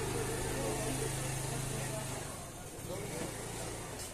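Street noise with a vehicle engine idling close by: a steady low hum that breaks off briefly a little past halfway, then resumes. People are talking in the background.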